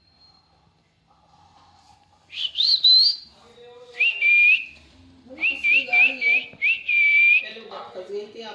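Alexandrine parakeet whistling. A rising whistle comes about two seconds in, then a held note, then four short notes and a longer held note near the end, with a lower chattering under the last notes.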